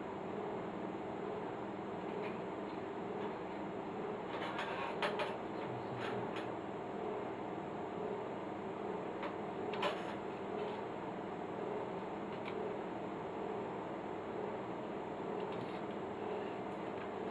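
Steady low electrical hum from workbench equipment, with a few light clicks and taps of metal tools on a tuner's circuit board and chassis during soldering work, a cluster of them about four to five seconds in and one sharper click near ten seconds.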